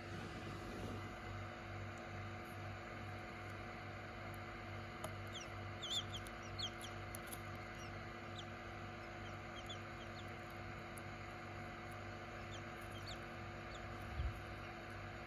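Quail chick peeping: many short, high, downward-sliding peeps, scattered and busiest about six seconds in, over the steady hum of an egg incubator.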